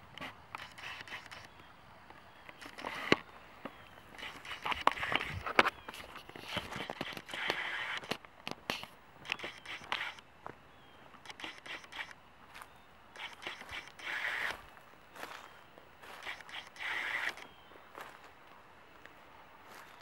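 Footsteps through dry grass and brush, with irregular crackling of stems and sharp snaps. Hoodie fabric rubs against the microphone as the camera swings at chest height.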